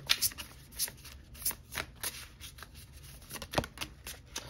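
Tarot cards being shuffled by hand: a run of short, irregular card snaps and riffles, with one sharper snap near the end.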